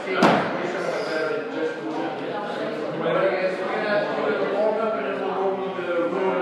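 Voices talking in a gym, with one sharp slam just after the start, the loudest sound here.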